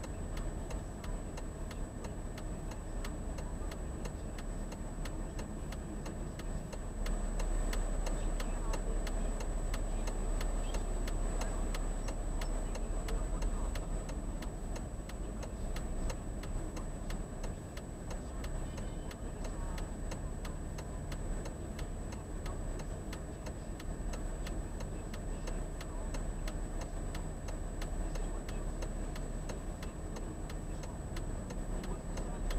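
A car's turn-signal indicator clicking steadily and evenly inside the cabin of a car stopped at an intersection. Under it runs a low traffic rumble that grows louder for several seconds from about seven seconds in.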